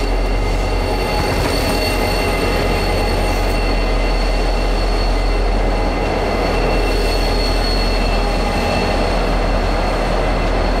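Norfolk Southern helper diesel locomotives passing directly beneath: a loud, steady engine rumble with several steady high-pitched whining tones over it.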